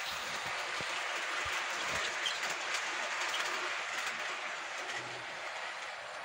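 Model train running past on its track: a steady whirring rattle of motor and wheels, with a few light clicks.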